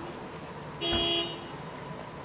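A single short toot, like a car horn, about a second in, holding one steady pitch for about half a second, over a steady background hiss.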